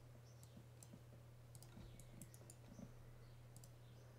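A scattered handful of faint computer mouse clicks over a low steady hum, near silence otherwise.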